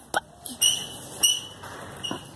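Dog whimpering: two short, high-pitched squeaks, the second about three quarters of a second after the first, with a brief click just before them.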